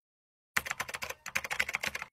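Rapid computer-keyboard typing clicks, a typing sound effect for on-screen text, starting about half a second in with a short pause near the middle.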